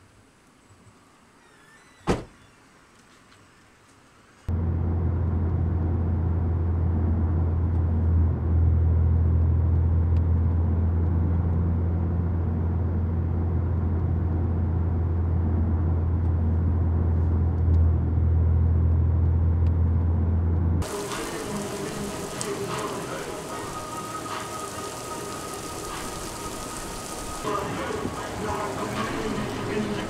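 A single sharp thump about two seconds in, the car's trunk lid shutting. Then a loud, steady low hum inside the car's cabin while driving, which cuts off suddenly about twenty seconds in.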